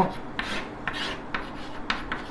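Chalk scratching on a blackboard as figures are written, in a series of short scratchy strokes.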